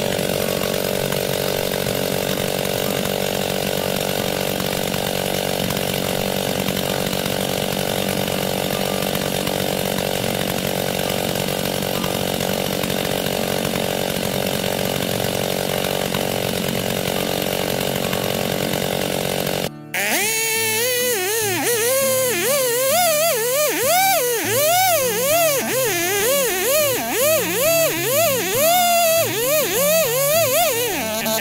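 Two-stroke Stihl gas chainsaw running steadily for about twenty seconds. Then it cuts off abruptly, and music follows with a repeated bouncing, wavering melody.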